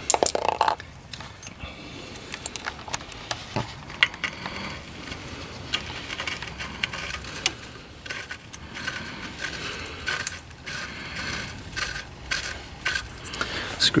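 Scattered light metallic clicks, clinks and scrapes of an oxygen sensor and hand tools being handled under a car as the new sensor is threaded into the exhaust by hand.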